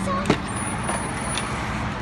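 Street traffic noise with a steady low engine hum, and a single sharp knock about a third of a second in.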